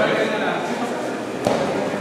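A single sharp thump about one and a half seconds in, over crowd chatter that echoes in a large hall.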